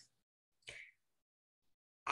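Near silence, the call audio gated to nothing, broken by one faint, brief sound a little after half a second in.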